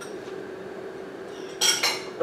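Kitchenware clinking twice in quick succession about a second and a half in, over a steady hum.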